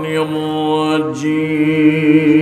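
A man chanting Quranic Arabic in a melodic recitation style, holding one long note with a brief dip in pitch about a second in.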